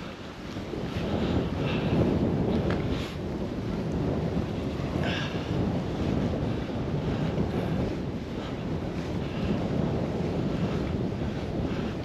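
Wind buffeting the camera's microphone: a dense, steady rumble that builds over the first couple of seconds and then holds with small gusts.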